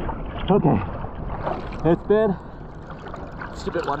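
Water sloshing and lapping around a surfboard at the surface, with two short vocal sounds, the second rising in pitch.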